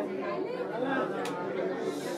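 Indistinct chatter of many people talking at once in a room, a murmur of overlapping voices with no single clear speaker.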